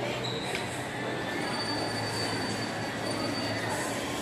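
Steady, echoing shopping-mall atrium ambience with a low hum, and a thin high-pitched whine through the middle.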